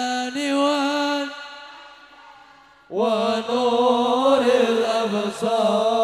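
Sholawat chanting in Arabic. A sung note is held and fades almost to nothing, then the voices come back in about halfway through with a wavering, ornamented melody.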